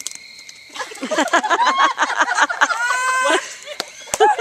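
Several people giving a 'beaver call' together: overlapping voices imitating an animal with high cries that rise and fall in pitch, starting about a second in and breaking off just before the end.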